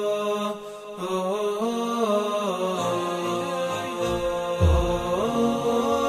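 Background vocal music: a slow, melodic chant of held notes stepping up and down over a sustained lower note. A deep low boom sounds about four and a half seconds in.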